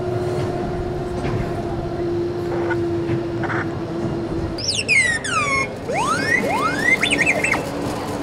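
R2-D2 droid beeps and whistles: a loud burst of quick falling whistle glides, then rising glides and a warbling trill, starting about halfway through and lasting about three seconds, over a steady low hum.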